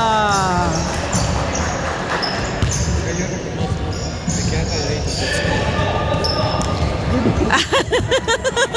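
Basketball being dribbled on a hardwood gym floor, with short high sneaker squeaks, in an echoing gym. A drawn-out shout ends under a second in, and talk and laughter start near the end.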